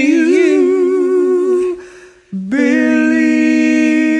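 Two men's voices singing a long held note in two-part harmony with vibrato, fading out about two seconds in. After a short break and a brief lower note, a new long note in harmony comes in and is held steadily.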